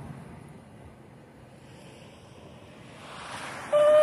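Low wind and street noise, then a rush of breath into a shofar about three seconds in, and the horn starting a loud, steady, single-pitched blast with overtones near the end.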